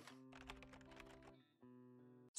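Very faint intro jingle: soft held notes with light clicking ticks over them, dropping out briefly near the end.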